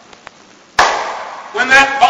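A sudden loud, noisy blast a little under a second in, fading over about half a second, standing for the dropped bomb exploding, followed by a man speaking.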